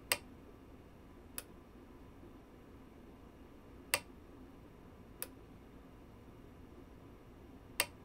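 DiscoVision PR-7820 videodisc player's focusing mechanism clicking, five sharp clicks at uneven intervals over a faint steady hum. The clicking is the sign of a focus fault: the focus element is like it's slamming itself against its end stop trying to focus, and the player cannot lock focus.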